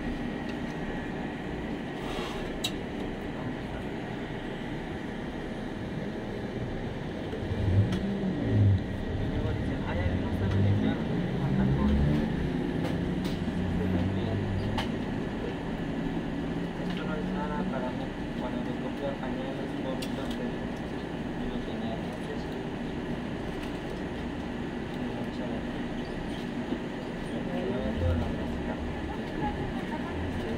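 Steady indoor store hum with a faint constant high tone. Muffled, low voices talk through the middle stretch and again briefly near the end, with a few light clicks.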